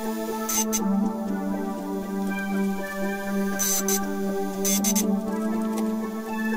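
Background music: a steady, sustained ambient pad whose notes change about a second in and again near the end, with a few short clicks over it.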